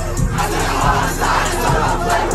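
A concert crowd's many voices over loud live rap music with a steady, pulsing bass beat, recorded from inside the crowd.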